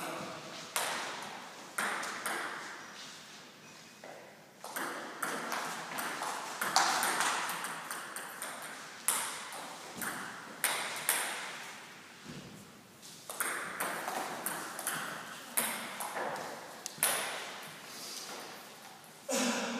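Table tennis ball clicking off the bats and the table, single sharp strikes at irregular spacing, each ringing out in a reverberant hall.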